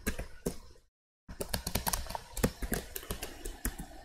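Typing on a computer keyboard: a fast run of key clicks, with a short break about a second in.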